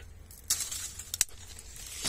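Dry branch and twigs rustling and brushing through strawberry-tree foliage as the branch is handled, with a few sharp clicks of wood, the loudest a little over a second in.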